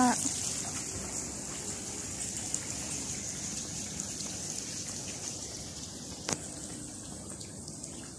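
Outdoor fountain water jets splashing into a stone basin, a steady hiss of falling water that grows gradually fainter, with one sharp click about six seconds in.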